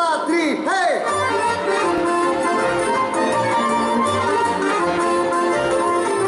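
Live band music with an accordion carrying the melody over a steady, pulsing bass beat. Several swooping sliding notes come in the first second.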